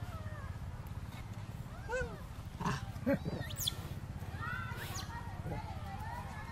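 Young macaques giving short, arching coo and squeak calls again and again, with a sharp high squeal near the middle, over a steady low hum.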